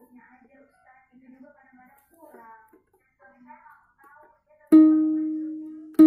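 The first string of a three-string kentrung (a small ukulele-type instrument) is plucked once about three-quarters of the way in and rings with one steady note as it slowly dies away. A second pluck follows right at the end. The string sounds E-flat, still slightly flat of its E tuning, so it needs to be tightened a little more.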